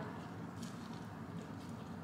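Faint chewing of a mouthful of soft tortilla wrap, a few quiet mouth sounds over low room tone.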